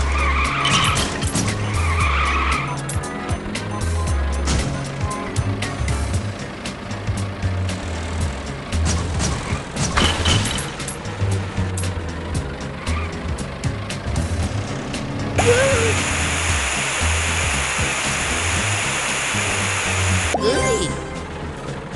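Mobile video game audio: background music with a steady low beat under a stream of quick clicking pickup sounds and game vehicle effects. About three-quarters of the way in, a loud, steady hissing water-spray effect starts as the cartoon fire truck's hose sprays.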